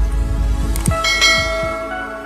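Logo-animation intro sting: deep falling booms, then a bright bell-like chime that rings out from about a second in and begins to fade near the end.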